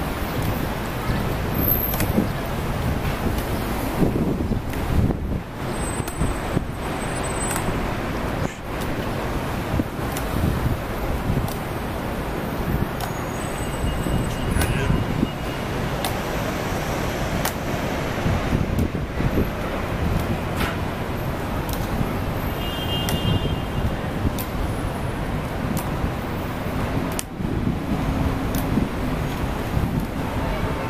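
City street traffic noise: a steady low rumble of passing cars and buses, with a few sharp clicks scattered through it.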